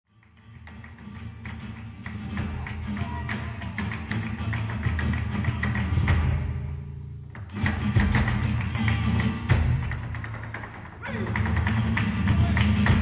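Live flamenco tarantos: a dancer's shoe strikes on a wooden stage floor in quick, dense footwork, with the accompanying group. It fades in from silence at the start, thins out about six seconds in, and comes back louder about a second and a half later.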